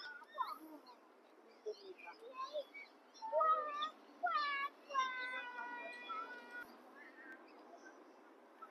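Several wailing, cat-like animal calls with a clear pitch, short ones a little past the middle and one long, slightly falling call lasting about a second and a half.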